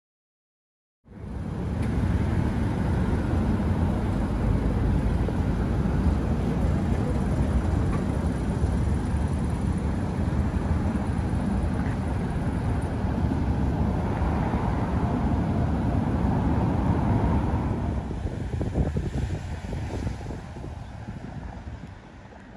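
A car running with a steady low rumble, starting suddenly about a second in and growing quieter over the last few seconds.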